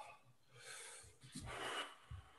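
Faint breathing of a man exerting himself in a slow, low-stance exercise: two breaths, one about half a second in and a louder one near the end.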